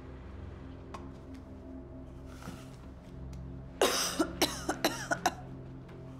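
A person coughing in a quick fit of about half a dozen coughs, starting a little before four seconds in, over a low steady music drone.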